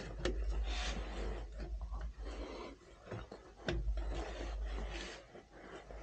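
Hands straining at a tight spin-on filter on a tractor engine: rubbing and scraping with a few sharp clicks, over a low rumble that comes and goes in two stretches.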